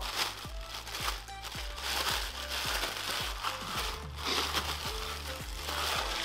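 Clear plastic wrapping crinkling as it is pulled off the roaster parts, over background music with a steady beat.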